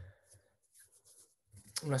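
A single computer keyboard keystroke right at the start, ending a burst of typing. Then it is close to silent until a man's voice starts near the end.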